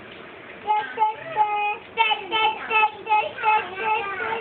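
A young child singing a simple tune in a high voice, starting about a second in with a few notes and one held note, then a quick run of short repeated notes.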